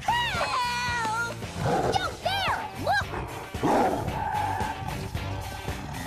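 Cartoon soundtrack: background music under several animal cries that swoop up and down in pitch, with two short growling bursts about two seconds and four seconds in.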